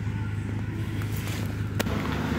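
A steady low hum, with a single sharp click near the end.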